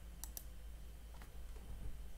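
Two quick clicks close together about a quarter second in, then a fainter click about a second later, like a computer mouse being clicked, over a faint low room hum.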